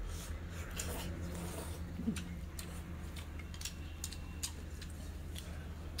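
Two people eating noodles from bowls with chopsticks: scattered short clicks and slurps, over a steady low hum.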